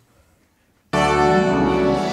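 Near-silent room tone, then about a second in an orchestra comes in all at once, loud and full, holding sustained notes.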